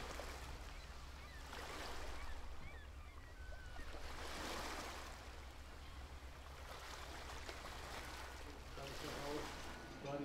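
Ocean surf breaking on the shore, the rush of water swelling and falling away every two to three seconds over a steady low rumble.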